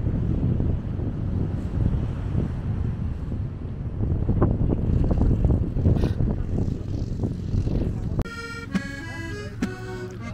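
Wind buffeting the microphone for about eight seconds. Then the wind noise drops abruptly and a squeeze box is heard playing a tune.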